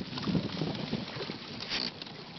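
A kayak being paddled: irregular splashing and dripping of the paddle blades in the water, with small knocks.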